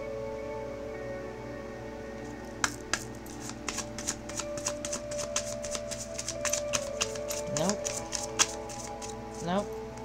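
A deck of tarot cards shuffled by hand: a quick run of papery flicks and clicks starting a little under three seconds in and lasting about six seconds, over soft background music.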